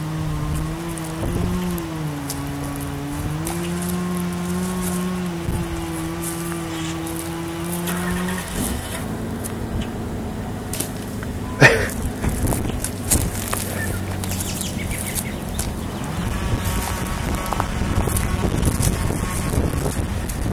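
An engine running steadily, its pitch wavering slowly, for the first eight seconds or so; after it stops, wind rushes over the microphone, with one sharp knock about twelve seconds in.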